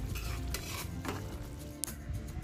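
Metal spatula stirring and scraping through a wok of bubbling coconut-milk curry, ending in a sharp clink near the end.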